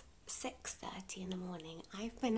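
A woman talking in a hushed voice, close to the microphone.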